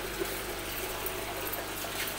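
Water running steadily from the drain pipes of an aquaponics system's barrel grow beds and splashing into the fish tank below.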